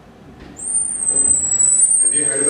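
Swinging double doors with overhead door closers being pushed open, giving a long, steady, very high squeal that starts about half a second in.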